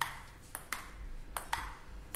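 Table-tennis rally sound effect: a ping-pong ball tapping back and forth in quick, irregularly spaced hits, about six sharp taps, each with a short ring.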